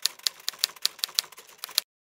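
Typewriter keystroke sound effect: a quick, uneven run of sharp clacks that stops shortly before the end.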